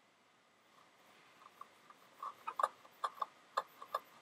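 An ink-loaded swab scrubbing back and forth across a paper card in short, quick strokes, starting about a second and a half in.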